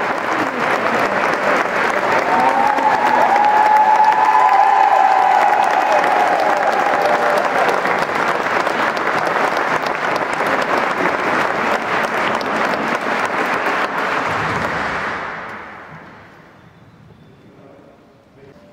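Audience applauding steadily in a large hall, the applause dying away about fifteen seconds in.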